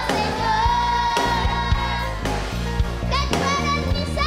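Live worship song: a child's voice singing through a microphone with band accompaniment and a steady drum beat.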